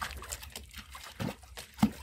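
Dog lapping water from a tub it is sitting in, a string of short wet splashes a few times a second.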